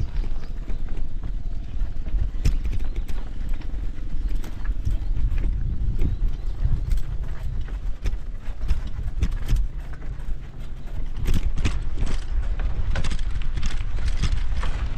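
Bicycle ridden over a rough dirt road, heard from a camera mounted on the bike: a steady low rumble of wind and tyres with irregular rattling clicks and knocks as the bike jolts over bumps, coming thicker near the end.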